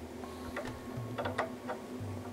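A few faint clicks of small plastic LEGO minifigure parts being handled as a ninja hood is pressed back onto a minifigure's head, over a low steady hum.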